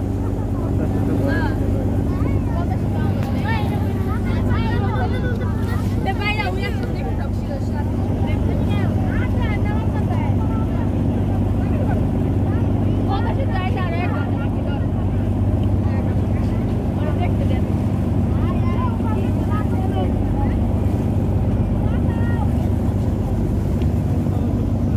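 River boat's engine running steadily with a constant low drone, under the chatter of passengers' voices.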